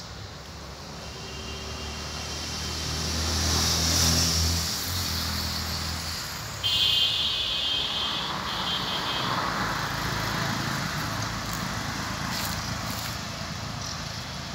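A motor vehicle passing on a nearby road, its engine hum building and then fading over the first six seconds, followed by the steady hiss of further traffic. A brief high-pitched tone, broken once, sounds about seven seconds in.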